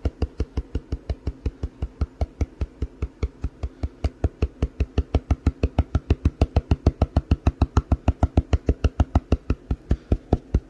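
Rapid, even tapping on the side of a gold pan, about five or six knocks a second. The tapping settles fine gold in water into a line along the pan's edge during cleanup.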